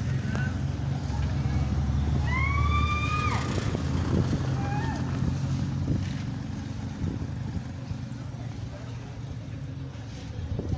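A motor vehicle engine running at idle nearby, a steady low hum that fades about six seconds in, with a short rising, then held call from a voice about two to three seconds in.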